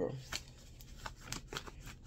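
A deck of oracle cards being handled and shuffled in the hand: a string of short, light clicks as the cards slap and slide together.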